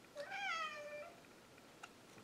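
A cat meows once, a single drawn-out call of nearly a second that rises slightly and then falls. A faint click follows near the end.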